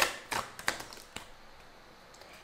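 Tarot cards being handled and drawn from the deck, a few light clicks and snaps in the first second or so, then quiet.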